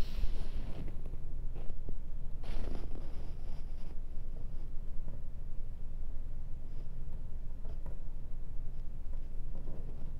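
Steady low hum of room noise, with a couple of brief soft rustles, one at the start and one about two and a half seconds in, as a glue brush and collage paper are worked against the canvas.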